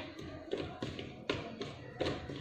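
Several light taps, about four in two seconds, from a hand handling a plastic spray bottle.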